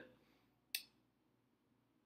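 Near silence, broken by one brief, sharp click about three-quarters of a second in.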